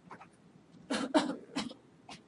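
A person coughing: three short coughs about a second in, the first two close together.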